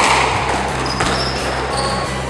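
Squash ball being struck in a rally: two sharp knocks about a second apart, with a short high squeak near the end.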